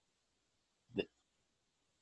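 Near silence, broken about a second in by one short, clipped syllable from a man's voice, a false start of a word.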